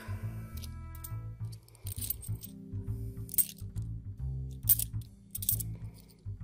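Cupro-nickel 50p coins chinking against each other as a handful is shuffled coin by coin, a few short bright clinks, over background music with a steady low bass line.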